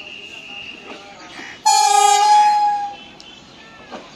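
An approaching local train sounds its horn: one loud blast of a little over a second, starting suddenly just before the middle, before it cuts off.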